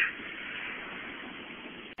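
Steady cabin noise inside a Honda car, with the engine at idle, picked up by a phone microphone as an even hiss. It drops out abruptly just before the end.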